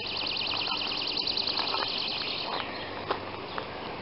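A small bird singing a fast, high-pitched trill of rapidly repeated notes that stops about two and a half seconds in.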